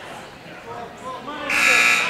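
Gymnasium scoreboard buzzer sounding once for about half a second, starting about one and a half seconds in, signalling a substitution during a stoppage in play.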